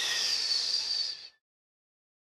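A breathy hiss, a person exhaling close to the microphone, that cuts off about a second and a half in.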